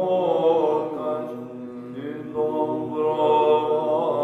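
Byzantine chant in the plagal fourth mode: a solo male cantor sings a slow, ornamented melody over a steady vocal drone (ison) held by two men. The melody falls back for about a second around the middle, then comes in strongly again about two and a half seconds in.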